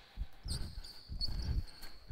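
Basketball play on an indoor hardwood court: the ball bounces and feet land in low thuds a few times, and from about half a second in there is a thin, high sneaker squeak, echoing in the large hall.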